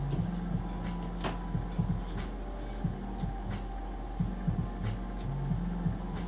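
Background music heard mostly as its bass line, a rhythmic run of low notes, over a steady electrical hum, with a few faint clicks.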